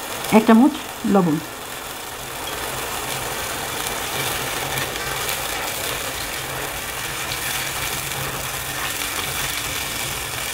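Curry gravy base frying in oil in a pan, a steady sizzle that grows slightly louder about two and a half seconds in, while it is stirred with a spatula.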